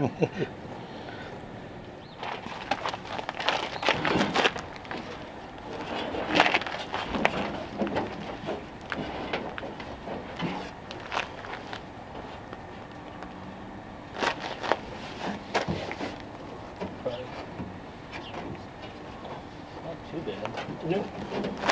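Irregular rustling, scraping and light knocks of a textured rubber mat being trimmed with shears and pressed into place inside a car trunk.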